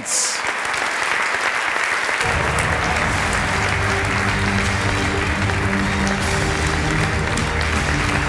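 Audience applauding steadily. Music with a bass line comes in under the applause about two seconds in.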